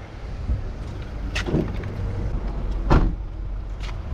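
A steady low rumble with three short, sharp clicks or knocks, the loudest about three seconds in.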